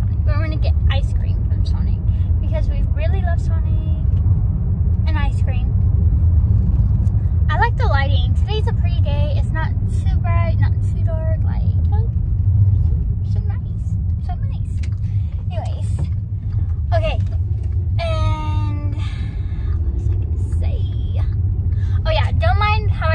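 Steady low rumble of a car on the move, heard from inside the cabin, with voices talking over it now and then.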